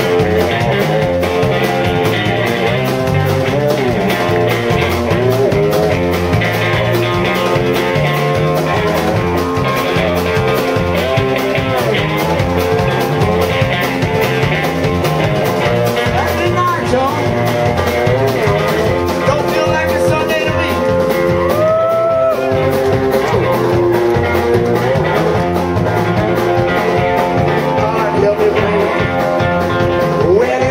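Live blues band playing an uptempo instrumental passage: electric guitar lead over a driving drum beat and bass. The guitar bends notes up in pitch, most clearly about two thirds of the way through.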